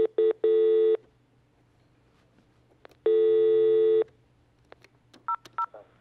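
Telephone-line tones heard over the studio phone line. There are a couple of short beeps and a half-second tone at the start, a one-second tone in the middle, and two quick keypad beeps near the end.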